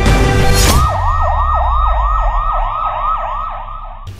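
Music breaks off less than a second in, and an electronic siren sounds in a fast yelp, rising and falling about three times a second over a low rumble, fading slightly near the end.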